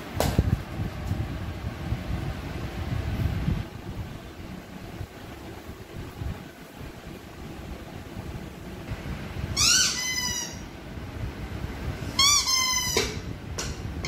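Dog whining twice in short, high-pitched cries, about ten and twelve seconds in, as it wears new dog boots for the first time. Earlier there are low rubbing and handling noises.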